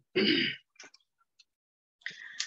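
A woman clearing her throat once, a short rough burst in a pause in her talk.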